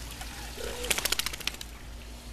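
A short low coo-like note, then a quick rattle of about a dozen plastic clicks as the orange squirt gun is handled.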